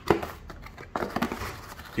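Hands opening a cardboard brake-pad box and rummaging through the soft packing inside: a few light clicks and rustles.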